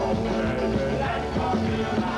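A 1950s-style rock and roll song: a male vocal group sings over drums and cymbals, piano and bass.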